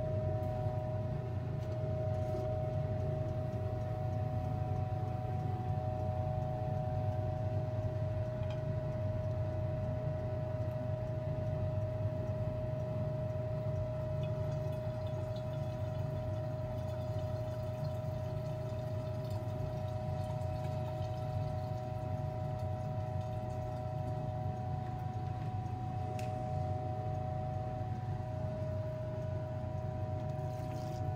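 Fume hood exhaust fan running steadily: a low hum with a steady whine above it. Midway, liquid is faintly heard being poured from a glass beaker into a flask.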